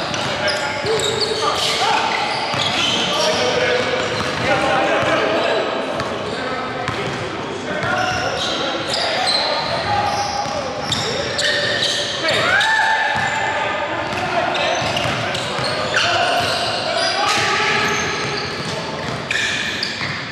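Basketball bouncing on a hardwood gym floor during play, with players' voices calling out over it, echoing in a large hall.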